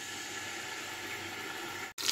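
Beef shank searing in hot oil in a stainless steel pot: a steady sizzle that cuts off abruptly just before the end.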